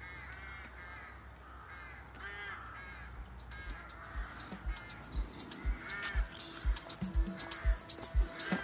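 Crows cawing repeatedly, a call every second or so. About three seconds in, music with a steady beat fades in and grows louder under the calls.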